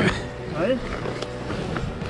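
Men's voices making short wordless cries and grunts as they haul on a recovery strap, over steady background music.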